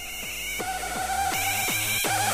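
Hardcore electronic dance music: a run of heavy kick drums, each dropping in pitch, about three a second, over a held synth note. It grows louder through the first second as the track builds back up from a quieter break.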